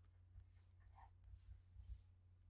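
Near silence: a few faint scratches and taps of a pen writing and underlining a word, over a low steady hum.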